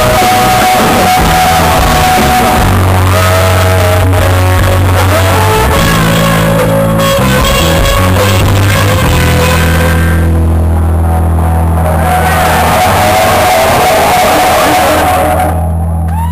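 Live hard-rock band playing loud: double-neck electric guitar, bass guitar and drum kit, with some shouted vocals. The music drops off a little near the end as the song winds down.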